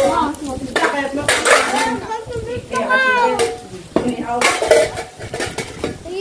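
Cutlery and dishes clinking repeatedly during a meal, with voices in the background.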